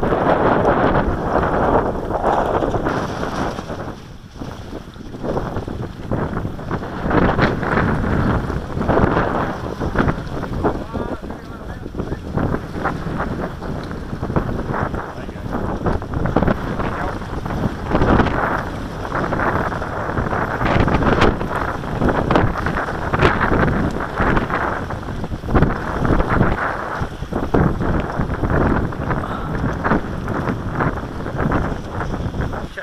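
Wind buffeting the microphone in gusts, rising and falling, with a brief lull about four seconds in.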